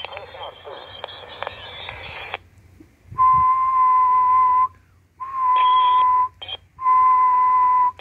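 A uSDX QRP transceiver's speaker gives receiver hiss for about two seconds, which then cuts off. Then comes its steady CW sidetone near 1 kHz as the transmitter is keyed to test its output power: three long key-downs of about a second each, with a short blip before the last.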